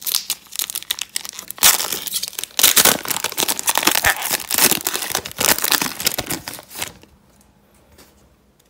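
Foil wrapper of a Panini Contenders football card pack being torn open and crinkled by hand, a dense run of crackling that stops about seven seconds in.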